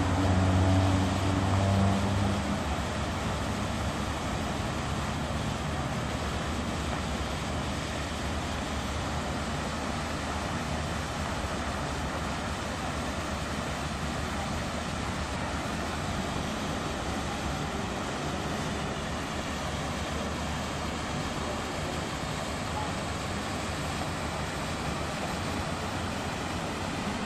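Road traffic: a vehicle's engine hums loudly for the first two seconds or so, then fades into a steady, even wash of traffic noise.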